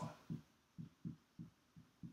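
A series of soft, low thuds from a marker pressing against a whiteboard as a formula is written, irregular, about three a second.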